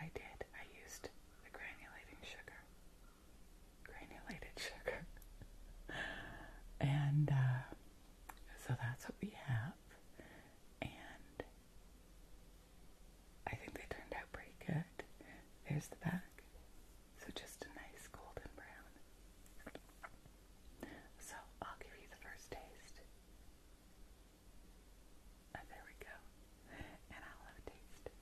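A woman whispering in short phrases with pauses between them.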